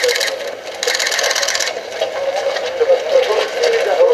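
Two bursts of rapid mechanical clicking, each about a second long, in the first two seconds: press cameras firing continuous shutter bursts, over a crowd of overlapping voices.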